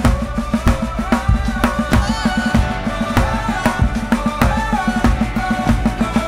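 Acoustic drum kit played to a steady, driving beat, with bass drum and snare hits, over a loud recorded pop-ballad backing track.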